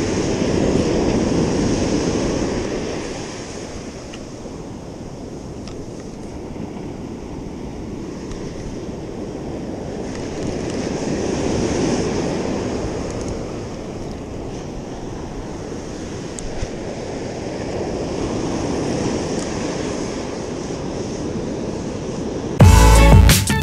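Ocean surf breaking on a sandy beach: a steady rushing wash that swells louder and fades back three times as the waves come in.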